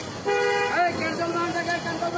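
A vehicle horn honks once, about half a second long, near the start, over steady street traffic noise; a person's voice follows.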